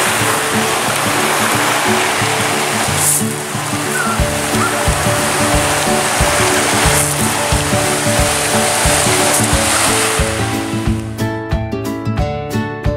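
Background music with steady notes and a beat, laid over the wash of surf breaking on a rocky beach. The surf noise cuts out about eleven seconds in, leaving only the music.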